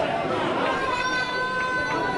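Footballers' voices calling out across the pitch in an almost empty stadium, with one long held shout in the second half.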